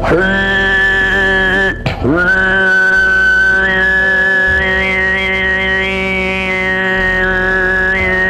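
Mongolian overtone throat singing (khöömei): a steady low drone with a high, whistle-like overtone held above it, the overtone wavering and slowly rising in pitch, imitating wind blowing past a cliff. The voice breaks off briefly about two seconds in and comes back with a quick upward swoop.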